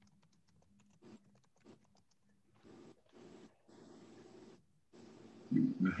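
Faint, quick clicks through the first couple of seconds, then several short bursts of soft, breathy noise.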